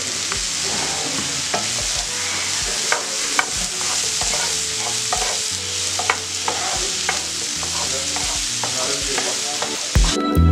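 Sliced mushrooms sizzling steadily in a non-stick frying pan while a wooden spoon stirs them, with scattered sharp clicks and scrapes of the spoon against the pan.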